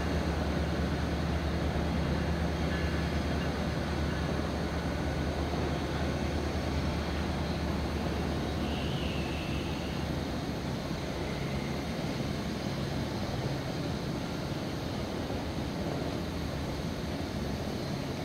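Metrolink diesel-electric locomotive running, a steady low engine hum and rumble that eases off slowly.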